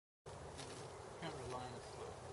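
A steady buzz, like a flying insect close to the microphone, over outdoor background noise.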